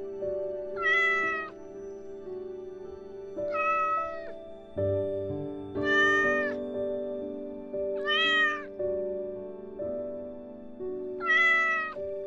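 A kitten meowing five times, each call short and high-pitched, over soft background music. They are the cries of a kitten trapped in a narrow gap between two walls.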